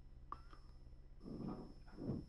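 Near-quiet room tone with a faint steady high-pitched whine. A short squeak comes about a third of a second in, and a faint muffled voice about halfway through.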